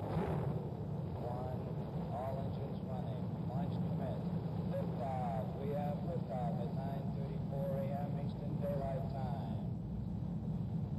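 Saturn V rocket engines at liftoff, a steady low rumble, with a voice talking over it.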